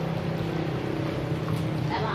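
Coconut water pouring in a thin stream from a cut-open green coconut into a plastic basin, over a steady low hum.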